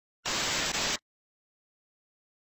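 TV-static glitch sound effect: a short burst of hissing static, under a second long with a brief dropout in the middle, cutting off suddenly.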